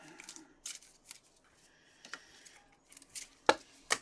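Hard plastic trading-card holders being handled and set down: light rustles and taps, with two sharper clicks near the end.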